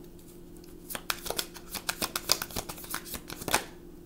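A deck of tarot cards being shuffled by hand: a rapid run of flicking card clicks starting about a second in and stopping shortly before the end.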